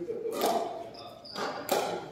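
Pickleball paddles striking the plastic ball and the ball bouncing on the gym floor: about three sharp knocks with a ringing echo in the hall, the loudest near the end.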